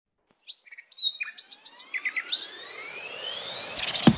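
Bird chirps, a quick run of short high calls, then a steadily rising tone that builds into the start of a music track's beat.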